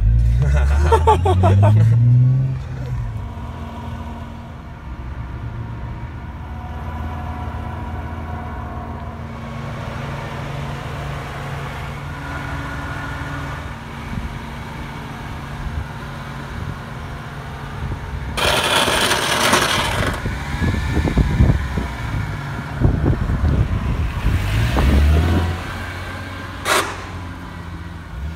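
Car engine running: a short rev rising in pitch at the start, then a steady low engine drone, a loud rush of noise about 18 to 20 seconds in, and another rev near the end.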